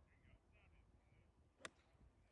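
Near silence, then a single sharp click about a second and a half in: a golf club striking the ball on a tee shot.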